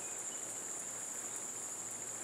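A steady, high-pitched drone of insects in the summer outdoors, with no breaks.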